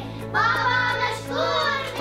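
Children singing two drawn-out phrases over background music with steady low sustained notes.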